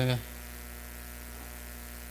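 Steady low electrical hum, mains hum in the audio chain, with nothing else over it once a man's voice breaks off at the very start.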